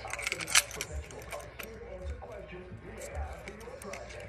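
A key ring with keys and plastic loyalty key-tag cards being handled, jangling with scattered sharp clicks.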